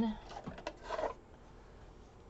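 A few light clicks and a short paper rustle as a planner sticker strip is handled and lifted from its sheet.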